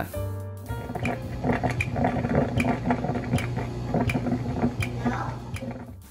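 OXO Brew 9-cup coffee maker making a regular clicking while it brews, about two to three clicks a second. This is the weird clicking it makes every brew, from an unknown cause. Background music plays underneath.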